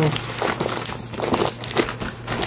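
Thin plastic bag crinkling in irregular bursts as hands pull and smooth it around a box.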